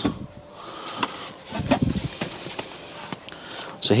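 Service book wallet being fetched and handled inside a car: a few light knocks and clicks with rubbing and rustling, and a duller thud about a second and a half in.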